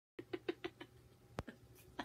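A woman's quiet, rapid laughter: five short breathy pulses in quick succession, followed about a second in by a single sharp click.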